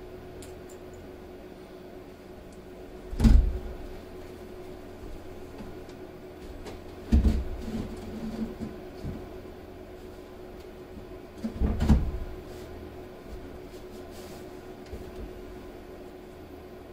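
A sheet of cement board being manoeuvred into place against wall framing: three heavy thuds about four seconds apart as it knocks against the studs and floor, with smaller knocks after the second.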